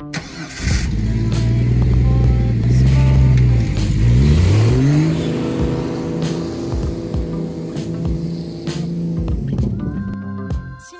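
Jeep engine running at low revs, then revving up in a rising whine about four seconds in and holding the higher revs as the Jeep drives past with its wheels spinning in the snow.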